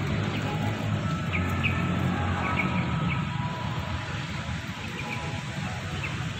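Small birds chirping briefly several times over a steady low rumble of outdoor background noise.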